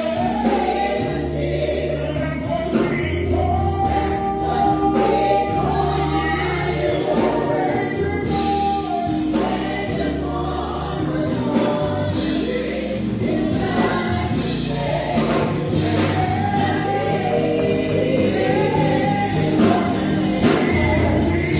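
Gospel praise team singing in harmony, several voices together, over a Yamaha keyboard and electric bass guitar holding sustained low notes.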